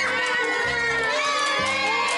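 A crowd of young children shouting and cheering, over background music with a steady low beat about once a second.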